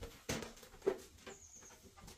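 Inflated latex balloon being handled and set down on a carpet: two short soft knocks and a faint, brief high squeak of the rubber.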